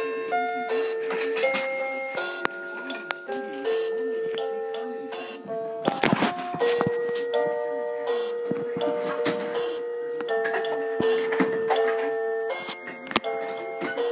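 Toy electronic keyboard playing a tune in simple electronic tones, a held low note under notes that change every half second or so, with a brief clatter about six seconds in.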